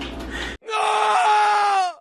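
A person's voice holding one long, high cry that starts abruptly about half a second in. It lasts about a second and a half and sinks a little in pitch before cutting off.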